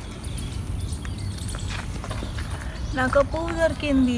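A steady low rumble with a few faint clicks, then a woman starts speaking about three seconds in.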